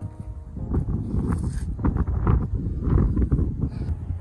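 Wind buffeting the handheld phone's microphone as a low, uneven rumble, with irregular footsteps on block paving as the camera is carried around the car.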